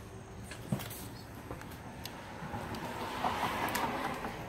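Highway traffic going by, a rushing noise that grows louder in the second half, with a single short knock about three-quarters of a second in.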